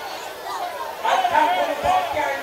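A man speaking into a microphone over a public-address system, quieter at first and louder from about a second in.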